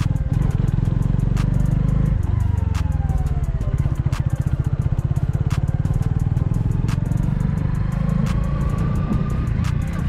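Honda CB125R's single-cylinder four-stroke engine running under way. Its note falls about two to four seconds in and rises again near the end as the bike slows and speeds up.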